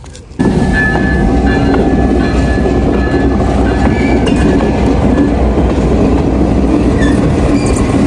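Stone Mountain excursion train passing at close range: the diesel locomotive and then its open passenger cars roll by with a loud, steady rumble. It starts abruptly just after the beginning, with a thin high whine over the first few seconds.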